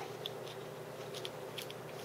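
Faint, scattered light clicks and ticks of small hardware handled by hand, as a screw is fitted through a metal flashing strip into a tripod camera-mount piece, over a faint steady hum.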